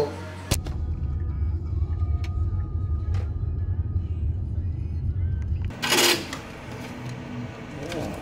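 Low, steady road rumble inside a moving taxi's cabin, starting about half a second in and cutting off abruptly near six seconds, with faint music over it.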